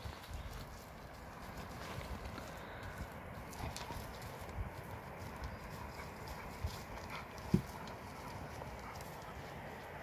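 Two dogs scuffling and stepping about over stony ground and brush in play, a scatter of soft thuds, ticks and rustles, with one sharper thump about seven and a half seconds in.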